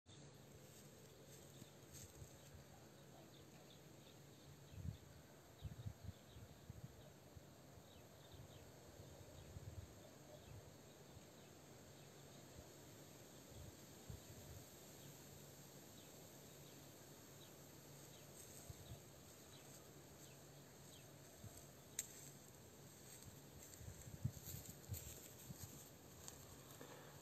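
Near silence: faint outdoor background with a few soft, low knocks, a handful around five seconds in and again near the end.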